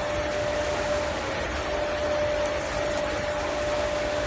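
HLWLW-600 rotary drum sieve running with water flowing through the wet screened material: a steady machine noise with one constant hum-like tone held throughout.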